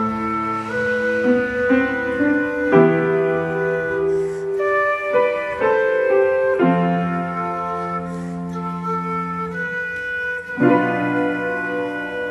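Instrumental passage of a slow blues ballad: a quena plays a held melody over piano chords, with the harmony changing about every four seconds.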